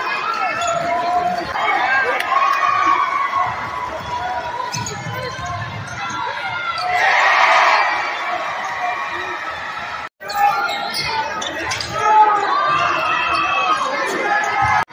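Basketball dribbling on a hardwood gym court amid continuous crowd chatter and shouting voices in a large echoing gym. The crowd noise swells loudly about seven seconds in, and the sound breaks off for an instant near ten seconds.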